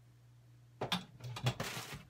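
Groceries and their packaging being handled on a counter: a few sharp clicks and knocks about a second in, then a short burst of rustling packaging. A faint steady low hum lies underneath.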